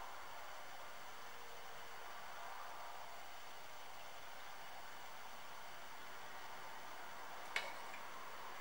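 Room tone: a faint, steady hiss of background noise, broken by a single sharp click near the end.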